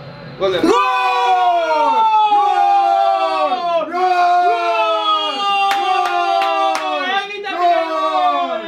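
Men yelling in celebration of a goal: a run of long, drawn-out shouts, each falling in pitch at its end. Three sharp slaps or claps cut through about two-thirds of the way in.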